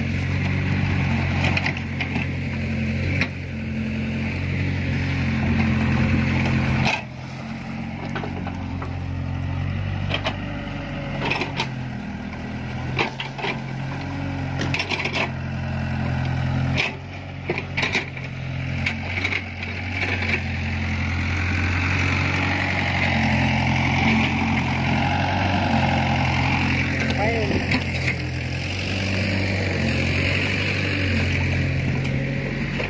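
Small tracked excavator's diesel engine running steadily, its pitch and load shifting as it digs the flooded paddy, with scattered knocks over it.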